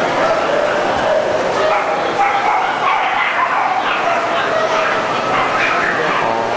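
Dogs barking and yipping over steady crowd chatter, with short high yaps coming again and again.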